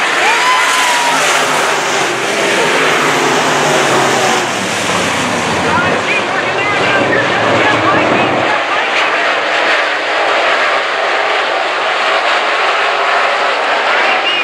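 A field of IMCA Modified dirt-track race cars running laps together, their engines rising and falling in pitch through the turns. A deeper engine sound is strongest through the first eight seconds or so, then drops away.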